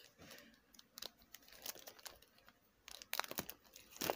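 Faint crinkling and rustling of packaging being opened by hand, with a cluster of sharper crackles about three seconds in.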